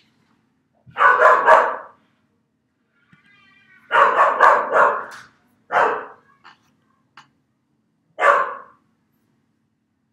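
A dog barking loudly in four irregular bursts.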